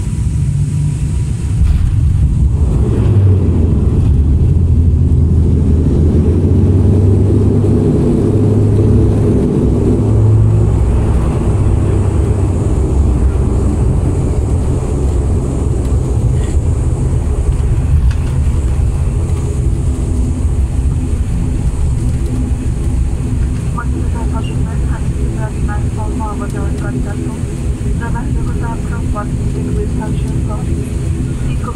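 Turboprop airliner's engine and propeller drone heard inside the cabin during the landing rollout on the runway. The low roar swells sharply about two seconds in, is at its loudest for the next several seconds, then eases off as the aircraft slows.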